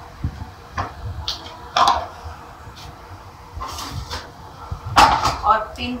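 Light clicks and knocks of a small spoon against steel kitchenware, then a loud metallic clank about five seconds in as the stainless-steel lid of a round spice box is lifted off.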